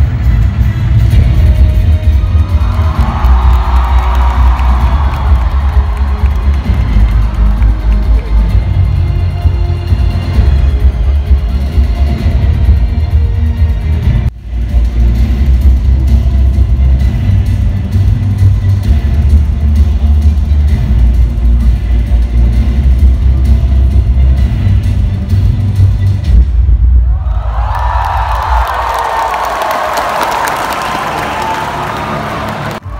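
Loud concert intro music over an arena PA, driven by a deep pulsing bass, with a brief break about halfway. A crowd cheers a few seconds in and cheers again near the end.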